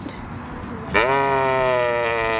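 A sheep bleating: one long, steady call that starts about a second in. The onlooker takes it as a sign the sheep is hungry.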